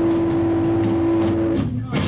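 Live rock band playing loud: a steady held note over bass and drum hits. It cuts out abruptly near the end for a split second, and the band crashes back in.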